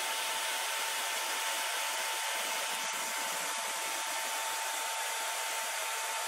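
Sanyo blower fan running steadily, a very noisy rush of air with a steady whine in it, forcing air onto the underside of a laptop motherboard beneath the CPU.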